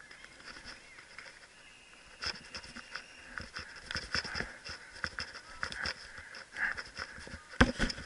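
Irregular clicks, knocks and patter of footsteps and rattling gear as a paintball player moves across grass. Near the end come a couple of loud, sharp pops from a paintball marker firing.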